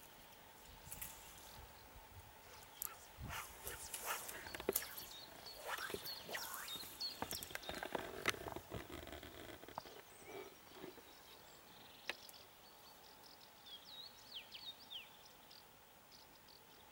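Outdoor pond-side quiet broken by irregular clicks, knocks and rustles for the first ten seconds or so, then a few short high chirps of small birds near the end.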